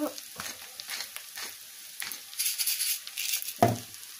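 Purple dead-nettle leaves with onions and garlic sizzling in a frying pan. The sizzle is steady and swells louder for about a second after the middle. There is a single sharp knock near the end.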